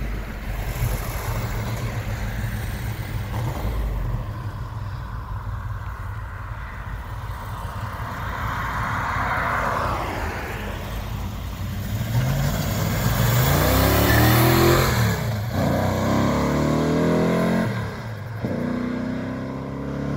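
Hemi V8 in a 1968 Dodge Dart with a five-speed manual, running at a steady low rumble, then accelerating hard away through the gears from about twelve seconds in. The pitch rises in three pulls, each cut off by a drop at an upshift.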